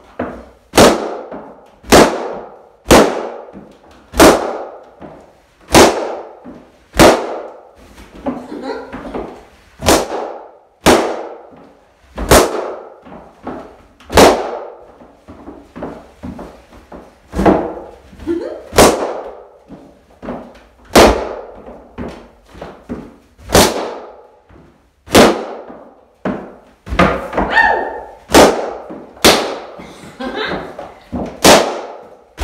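Latex party balloons bursting one after another as they are stomped underfoot. There are about 25 loud, sharp pops, roughly one a second, each ringing briefly in a small room.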